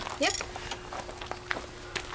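A short spoken 'yep', then a quiet stretch with a faint steady hum and a few soft clicks and rustles as two people get up to start work.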